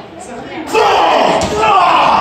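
Loud, drawn-out wordless yelling starts about two-thirds of a second in and carries to the end, with a single sharp smack partway through.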